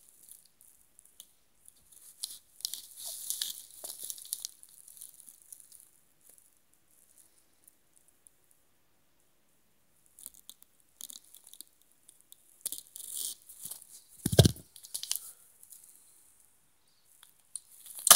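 Dry rustling and crinkling of a package of instant mashed potato flakes being handled, in two spells with a quiet gap between. There is a single low thump about fourteen seconds in.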